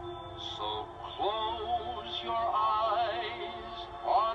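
Slow lullaby melody, sung by a male voice, over soft sustained orchestral accompaniment; the melody comes in about a second in.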